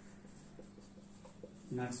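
Faint scratching of a marker on a whiteboard as a word is written, over a low steady hum. A man starts speaking near the end.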